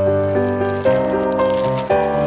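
Solo piano music with sustained notes, a new chord struck about a second in and another near the end. Clear plastic packaging crinkles underneath as it is handled.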